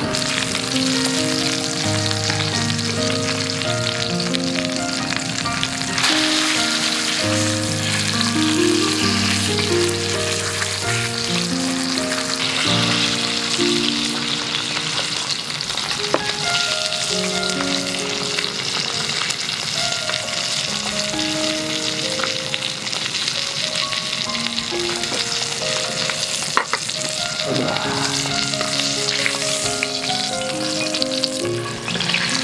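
A thick steak sizzling steadily in a skillet over a camp stove, the meat searing as it cooks through. Background music with a slow melody plays over it.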